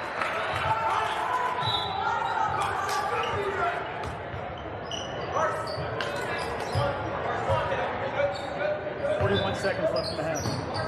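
A basketball being dribbled on a gym's hardwood floor, irregular thuds, under shouting voices from players, coaches and spectators.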